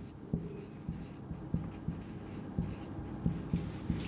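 Marker pen writing on a whiteboard: a run of short, irregular strokes and taps as a word is handwritten.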